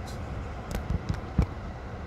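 Low steady vehicle rumble heard from inside a stationary car, with a few short knocks in the second half, the loudest a little over a second in.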